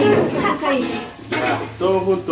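Several people talking around a dinner table, with a little clinking of tableware. The voices grow louder near the end.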